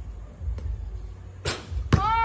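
A basketball striking hard surfaces on an outdoor court: two sharp knocks about half a second apart near the end, over a low steady rumble.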